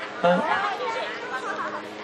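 Background chatter of several overlapping voices, quieter than the lecture, with a faint steady hum beneath it.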